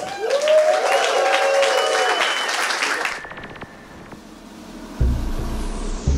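Audience applauding and cheering for about three seconds, then fading. Electronic music comes in with a falling sweep, and its drum beat starts about five seconds in.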